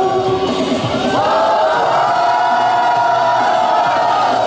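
A woman singing a pop song into a handheld microphone, amplified, with music; from about a second in she holds one long note.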